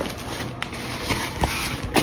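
A weighted vest being handled and set down on a bathroom scale: fabric rustling with a few soft knocks, the loudest just before the end.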